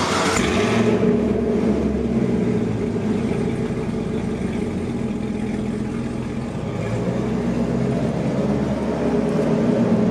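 Chevrolet Camaro V8 running at idle through its quad exhaust tips, a steady low rumble echoing off the concrete of a parking garage. It grows a little louder near the end as the car pulls away.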